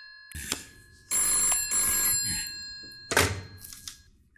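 Black desk telephone's bell ringing: a fading ring, then one more ring of about a second that dies away. Near the end the handset is lifted with a sharp clack.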